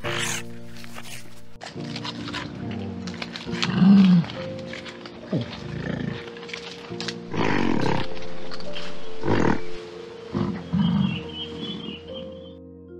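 Several short animal calls over background music made of steady sustained tones.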